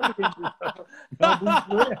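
People laughing in short chuckling bursts, with a few laughing words mixed in.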